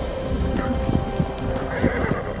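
A horse galloping: a quick run of hoofbeats over sustained film-score music.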